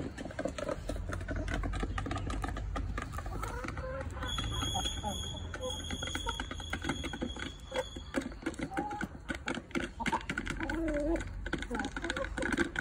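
Backyard chickens pecking at feed, a dense patter of rapid beak clicks against the ground and feeder, mixed with short clucking calls from the flock.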